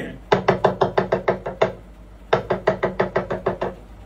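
Talking drum struck with a curved stick in fast, even strokes of one steady pitch, about eight a second: a run of about a dozen, a short pause, then about nine more. It is the student's practice of the rapid "do do do" stroke run, heard over a video call.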